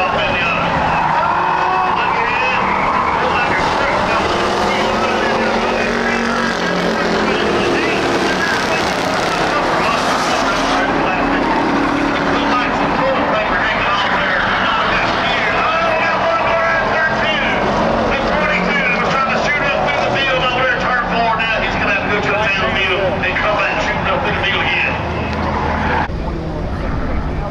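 A pack of Ford Crown Victoria stock cars racing on a dirt oval, their V8 engines running together in a steady din, many pitches rising and falling as the cars accelerate and lift through the turns.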